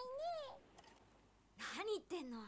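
Cartoon dialogue: a young girl's high voice ends a line with its pitch rising then falling, then after a short pause another voice starts speaking near the end.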